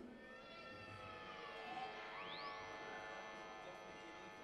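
Soft, sustained musical intro from a live band: layered held tones that waver slowly, with one note gliding up to a high held tone a little past halfway through.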